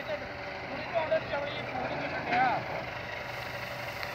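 Tractor engine running steadily while the tractor pushes into a heap of wheat straw with a rear-mounted box.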